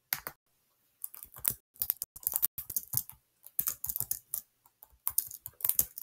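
Typing on a computer keyboard: quick, irregular runs of keystrokes with short pauses between them.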